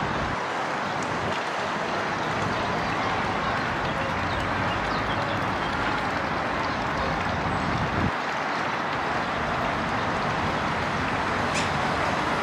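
Steady outdoor background hiss, even and unbroken, with a few faint high chirps now and then.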